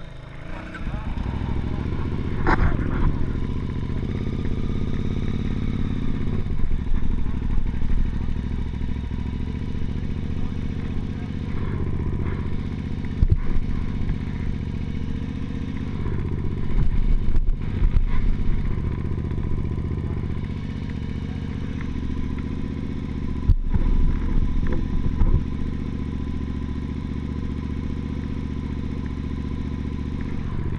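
KTM 950 Super Enduro's V-twin engine pulling away from a standstill and riding on along a gravel track, heard from the rider's helmet. The engine note rises about a second in and keeps on, with several short breaks and sharp knocks from the rough ground.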